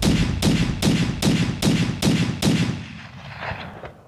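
Seven identical gunshot-like bangs in quick, even succession, about two and a half a second, each with a short ringing tail, ending after the seventh. They come too fast for a bolt-action rifle, so this is one rifle report repeated as an edited sound effect.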